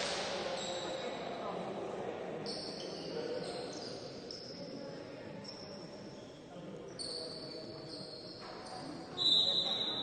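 Basketball bouncing on the wooden gym floor during free throws, over a faint indoor hall ambience; the sound grows louder near the end.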